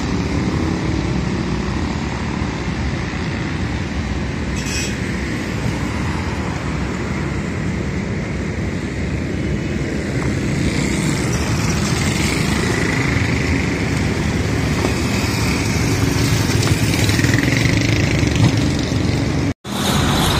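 Road traffic on a busy street: a steady mix of engine and tyre noise from passing cars, vans and motorcycles, growing a little louder in the second half. The sound drops out for an instant near the end.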